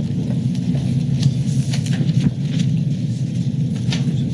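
Steady low rumble of meeting-room background noise, with scattered short clicks and paper rustles from papers being handled at the table.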